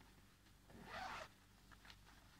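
Zipper on a stroller's quilted foot cover being pulled open in one short run about a second in, with a few faint ticks after it.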